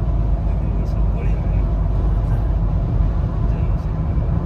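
Steady low rumble of road and engine noise inside a car's cabin as it drives along a freeway.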